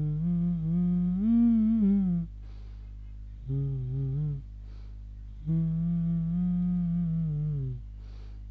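A man humming a tune to himself with his mouth closed, in three drawn-out phrases that rise and fall gently in pitch, with short breaths between them.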